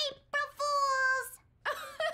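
A woman's cartoon shriek of mock fright: a short cry, then a held high "aaah" lasting under a second. Voices start up again near the end.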